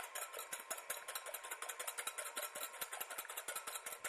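Wire whisk beating eggs in a glass bowl: a fast, even run of clicks as the wires strike the glass, with the wet slosh of the beaten eggs.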